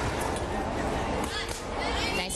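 Background voices and general crowd noise echoing in a large gymnasium hall, with a few faint sharp clicks.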